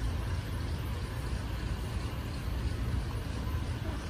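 Steady low rumble with a faint hiss above it: ambient background noise, with no distinct events.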